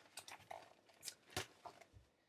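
A school folder rustling and clicking as it is handled and swung aside, a quick string of faint scrapes with one sharper knock past halfway.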